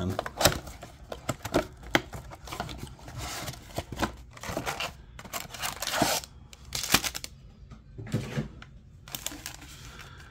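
A cardboard Topps Garbage Pail Kids Chrome blaster box being handled and opened by hand: a run of irregular clicks, taps and scrapes as the flaps are worked open and the card packs inside are handled.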